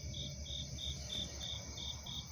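A cricket chirping steadily outdoors at night, short high chirps repeating about three times a second.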